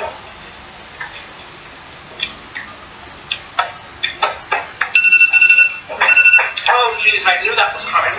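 A person's voice making short sounds without clear words, with a high, steady tone held for about a second and a half just past the middle, broken briefly once.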